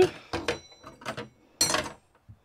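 A few short clicks and knocks from hands working at a kitchen sink and faucet, with one louder clatter near the end; no water is running yet.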